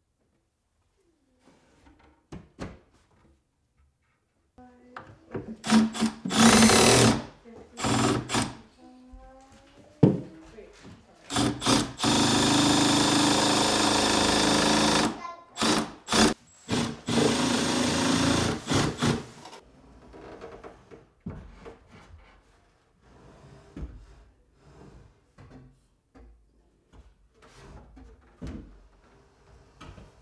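Cordless driver running in several bursts as it drives screws, short runs first and then two longer runs of a few seconds each. Fainter knocks and handling sounds follow near the end.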